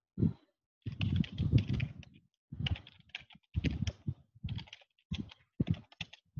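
Typing on a computer keyboard: irregular bursts of quick key clicks separated by short pauses.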